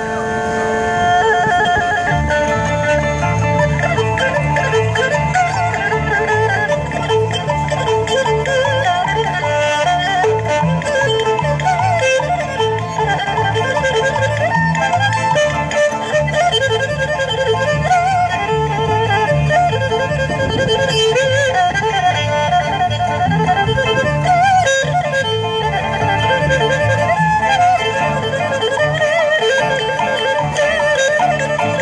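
Erhu bowed in a sliding, wavering melody with heavy vibrato, played live through a microphone and small amplifiers. Underneath it a recorded backing track with a steady, repeating bass pattern comes in about two seconds in.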